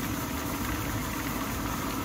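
Handheld steamer running with a steady hum and hiss of steam.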